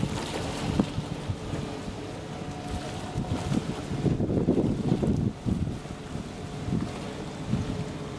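Wind buffeting the microphone in gusts, strongest about halfway through, over small waves washing against shoreline rocks, with a faint steady drone underneath.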